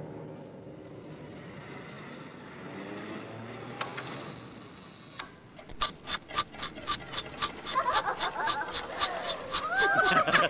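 A clockwork timer on a time bomb being set: a couple of single clicks, then quick, even ticking from about six seconds in. Laughter joins near the end.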